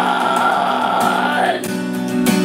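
A male singer holds one long high note over a strummed acoustic guitar; the note ends about a second and a half in, and the guitar carries on.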